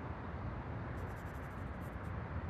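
A marker pen scratching a signature onto tape stuck on a cloth bag, a quick run of short strokes in the second half, over a steady low background rumble.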